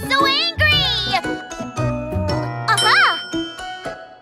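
Bright children's cartoon music with chiming notes. A child's voice makes sliding, wordless vocal sounds in the first second, and there is a quick up-and-down pitch glide about three seconds in.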